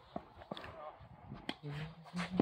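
A tennis ball being struck and bouncing in practice play: three sharp knocks, the two loudest about a second apart.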